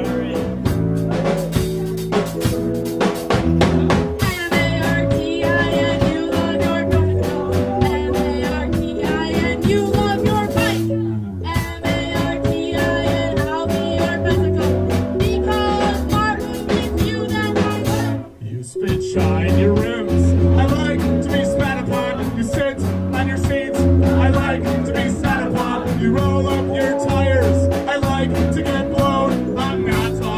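A rock band playing live: drum kit, synth keyboard and guitar, with a voice singing over them. The music drops out for a moment about two-thirds of the way through, then comes straight back in.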